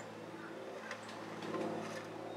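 A faint, steady low hum with a few light ticks over it.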